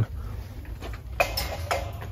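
Ceramic mug being set down in a wire shopping cart. About a second in it clinks sharply against the other mugs and glassware, followed by a few lighter clinks, over a low steady hum.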